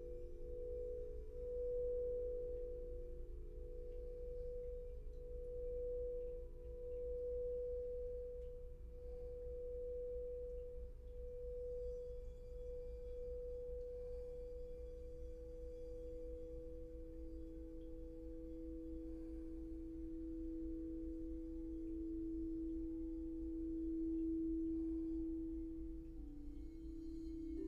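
Crystal singing bowls sung with a wand: a held tone that pulses in loudness about every second and a half, joined about halfway through by a lower bowl's tone that swells and holds.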